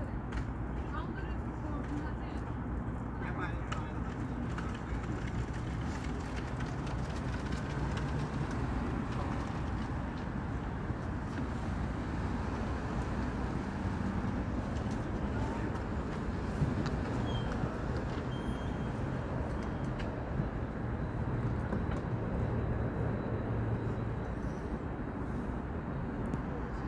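Steady low rumble of outdoor traffic and vehicles, with faint, indistinct voices in the background.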